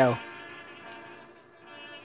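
Faint brass band music from the film's soundtrack, sustained buzzy chords held steadily, heard quietly through the room's speakers.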